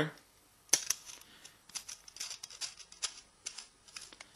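Stainless steel bolt being screwed by hand through a stack of stainless steel sink strainer plates: a string of irregular metallic clicks and scrapes as it works through the undersized holes.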